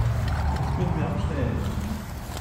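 Faint, indistinct voice over a steady low rumble.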